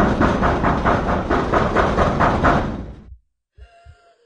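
Rapid, loud pounding on a door, about four knocks a second, fading out about three seconds in.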